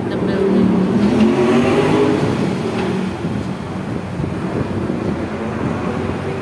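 Engine of an open-top double-decker tour bus rising in pitch as it accelerates, loudest in the first three seconds and then settling, over a steady rush of street traffic and wind.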